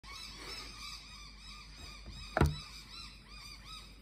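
Faint, repeated bird calls in the background, with a single sharp thump about halfway through, the loudest sound.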